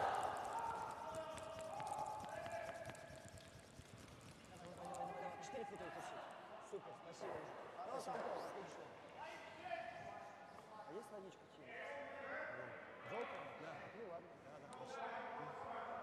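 Curling players' voices calling out on the ice while brooms sweep a stone, with scattered sharp knocks.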